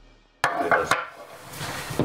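The tail of the intro music dies away and cuts off. It is followed by a few sharp knocks and clatter from objects being handled in a small room.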